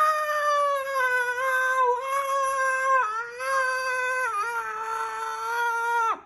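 A woman belting one long, high held note for about six seconds, dipping slightly in pitch about three seconds in and again past four seconds, and cutting off at the end.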